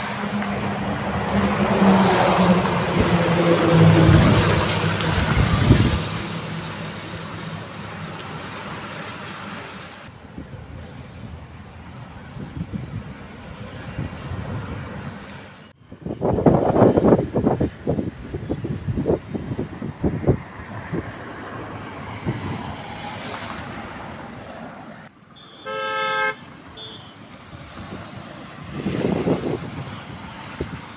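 Highway traffic going past: vehicle engines and tyre noise, loudest in the first six seconds with a low engine note from a heavy vehicle, then lighter traffic. A single short car horn toot sounds about three-quarters of the way through.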